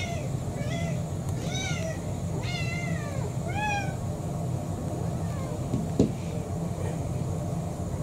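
Several house cats meowing while begging for their dinner: about five short, high, arching meows in the first four seconds, then fainter ones. A single sharp knock comes about six seconds in.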